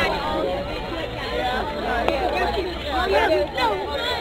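A crowd of spectators chattering: many overlapping voices, none standing out.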